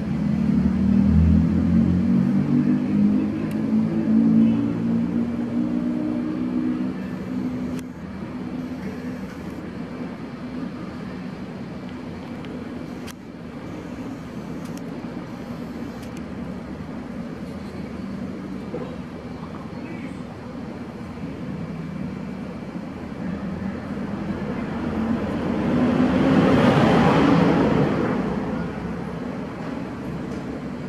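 Motor vehicle sounds in the background. An engine runs low in the first several seconds, then near the end a vehicle passes, swelling and fading away.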